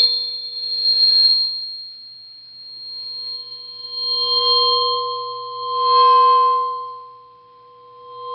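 Sustained bell-like metallic ringing, several pitches held together, swelling and fading in waves: one about a second in, a longer one from about four seconds, and a stronger one around six seconds.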